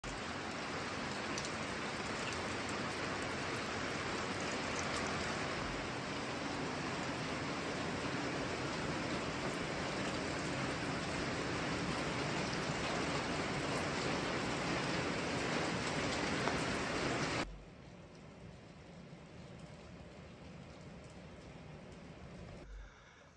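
Steady heavy rain falling, an even hiss of drops on wet ground. About seventeen seconds in it drops suddenly to a much softer rain.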